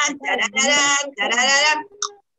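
Young children singing loudly together in long held notes; the singing stops just before the end.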